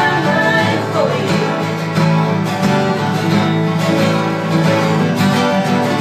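Acoustic guitars strummed and picked together, with voices singing along to an oldies song.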